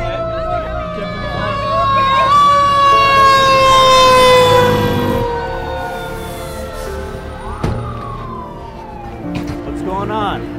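Emergency vehicle siren with one long, slowly falling pitch, loudest about four seconds in and fading after.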